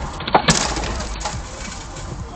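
An ambulance's rear-door window glass being smashed out: two sharp cracks close together about half a second in, then a fading crackle of breaking glass. It is heard from inside a following car, over that car's low road rumble.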